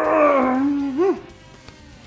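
A man's drawn-out vocal groan that sinks in pitch and holds, ending in a short rising-and-falling sound about a second in. After it, faint background music continues.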